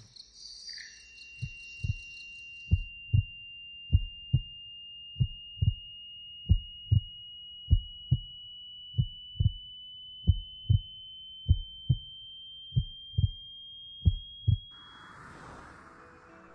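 Heartbeat sound effect: paired low lub-dub thumps, a pair about every second and a quarter, under a thin high ringing tone that rises slightly in pitch and cuts off shortly before the end.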